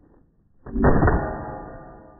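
A single rifle shot about two-thirds of a second in, followed by a steel target ringing with several steady tones that fade slowly.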